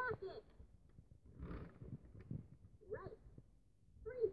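Electronic speaker of a Little Einsteins Pat Pat Rocket toy plane giving short high-pitched voice sounds: one ends about half a second in and another comes briefly near three seconds. Soft noise from the plastic toy being handled falls between them.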